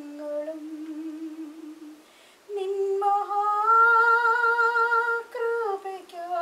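A single voice singing a slow melody with no instruments heard, in long held notes. It pauses about two seconds in, then sings a long note that climbs in steps and holds before falling away near the end.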